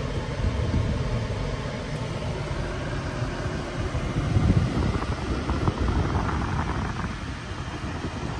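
Steady hum and air rush inside the cabin of a parked 2021 Audi SQ5, from its climate-control fan running with the car switched on.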